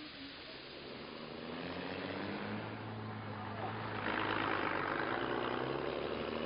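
A motor vehicle's engine running with a steady low hum, growing gradually louder, with a broader rush of noise coming up about four seconds in.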